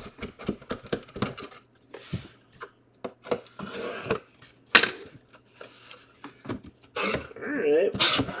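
Cardboard box being handled and opened: cardboard scraping and rubbing with many scattered knocks and clicks, one sharp knock a little before five seconds in.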